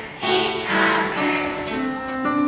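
Children's choir singing a Christmas song, with a brief dip in loudness just after the start before the voices pick up again.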